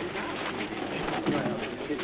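Indistinct voices talking over a steady hiss.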